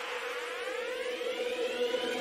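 Electronic riser sound effect in a logo sting: a siren-like tone sweeping steadily upward in pitch over a steady held note, building toward the music that follows.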